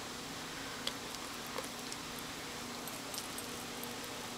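Quiet room with a steady low hum and a few faint, short clicks and ticks from a dog being petted and handled about the mouth and chin.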